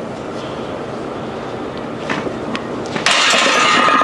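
Steady background hiss while a loaded barbell is bench-pressed, then about three seconds in a sudden metallic clang with a ringing tone that carries on: the steel barbell striking the rack.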